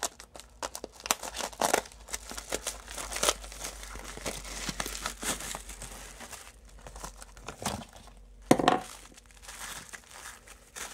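Plastic poly mailer and bubble wrap being handled as a bubble-wrapped bundle is pulled out and unwrapped: irregular crinkling and rustling, with a louder burst near the end.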